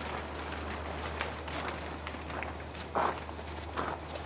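Footsteps: irregular short steps, the loudest about three seconds in, over a steady low hum.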